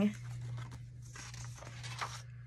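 Pages of a ring-bound book being turned by hand: a soft rustle of paper and card from about a second in, with light handling noises.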